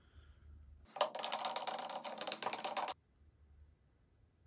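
A wooden stirring stick scraping and knocking against a plastic mixing jug while epoxy resin is stirred. It makes a rapid clatter of clicks that starts abruptly about a second in and stops suddenly about two seconds later.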